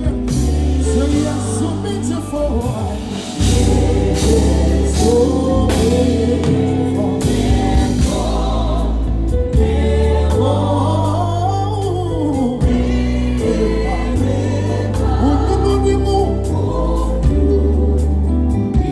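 Live gospel band performing: sung lead and backing vocals over drum kit, bass and keyboards. The music eases slightly, then the full band comes back in about three seconds in.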